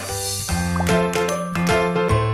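Short music jingle of tinkling, bell-like notes struck in quick succession over a steady low held note.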